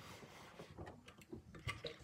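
Faint handling noise: a few soft, scattered clicks and rustles over quiet room tone.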